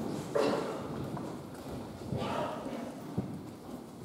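A few footsteps and knocks on a hard church floor as clergy shift position, with short murmured voices about a third of a second in and again about two seconds in.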